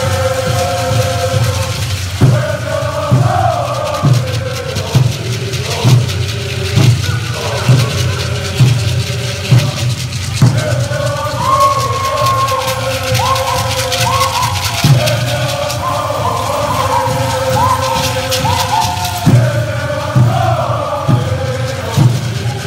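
A chorus of Pueblo men singing a Buffalo Dance song in unison, accompanied by double-headed hand drums beaten steadily about once a second.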